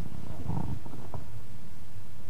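Low, steady rumbling hum of room background noise, with a faint, indistinct sound about half a second to a second in.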